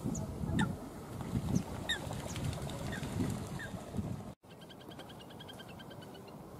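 Bird calls over water in two parts, split by a sudden cut in the sound after about four seconds. First come low calls and a few short, falling high chirps. Then a fast, high-pitched trill of rapid even notes, typical of the little grebe's whinnying trill.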